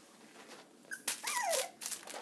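A three-week-old Jack Russell terrier puppy gives a short squeak and then a whimper that falls in pitch, about a second in, with rustling from the puppies scuffling.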